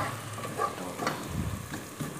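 Chopped onions and spices frying in oil in a steel pot on a gas stove, a steady sizzle with a few faint clicks.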